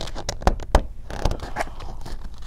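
Stiff picture-book page being turned: a papery rustle with a run of irregular crackling clicks.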